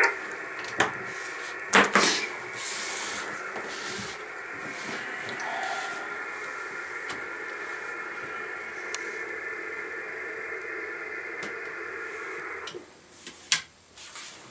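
Radio receiver audio: a steady hiss cut off at the top, like a narrow receive filter, with faint steady tones in it, under a couple of loud clicks early on from the antenna cable being handled. The receiver audio stops suddenly about two seconds before the end, followed by another click.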